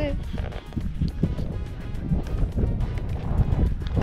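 Wind rumbling on the camera's microphone while walking over moorland grass, under background music.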